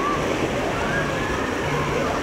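Busy water park: a steady wash of splashing, rushing water with many distant voices and children's calls mixed in.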